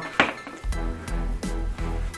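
Background music with a steady beat. Over it, a sharp click about a quarter of a second in and a few lighter clicks later, from the plastic body of an Ursus C330 tractor ignition switch being pried apart by hand.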